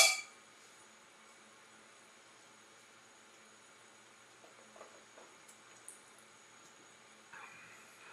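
Two stemmed beer glasses clinked together once in a toast: a short, bright ring that dies away within a fraction of a second. Then only quiet room tone with faint sips.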